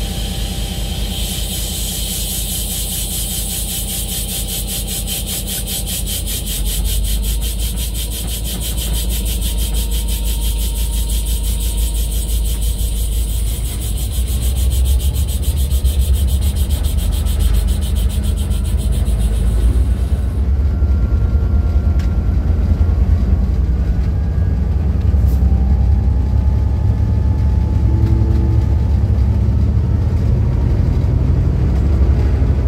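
N class diesel locomotive heard from the cab as the train pulls away: the engine runs with a fast, even pulsing, and a deep rumble builds and grows louder as the train gathers speed. A steady high hiss runs alongside and stops about two-thirds of the way in.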